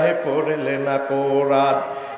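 A man singing a Bengali devotional song solo in long, drawn-out held notes. The notes stay nearly level, with a short break about a second in.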